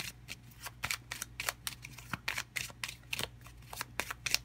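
A tarot deck being shuffled by hand: a quick, irregular run of card clicks and slaps, several a second.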